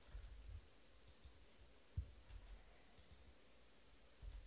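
Faint computer mouse clicks and soft desk bumps while a randomizer button is clicked repeatedly, with one sharper knock about two seconds in; otherwise near silence.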